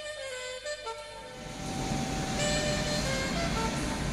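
Background music with sustained melodic notes, joined from about a second and a half in by the rising rumble of a large four-engine jet aircraft's turbofan engines on the runway.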